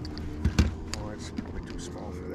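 Two dull thumps close together about half a second in, with small clicks and knocks of handling on the boat and some low talk.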